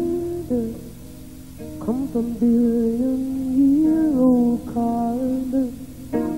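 A woman singing a few long held notes that swoop up into pitch, over chords on a hollow-body electric guitar.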